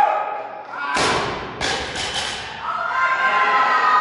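Loaded barbell with rubber bumper plates dropped from overhead onto the gym floor, landing with a heavy thud about a second in, then bouncing and rattling for about a second. Voices shout near the end.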